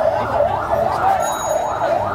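A siren sweeping quickly up and down in pitch, about three cycles a second, without a break.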